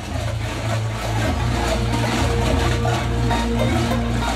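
A dense, continuous clanging of the many goat bells worn on a Yeros carnival costume, shaken as the goat-masked wearer dances and leaps.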